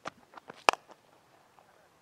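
Cricket bat striking the ball: one sharp crack about two-thirds of a second in, after a few faint ticks.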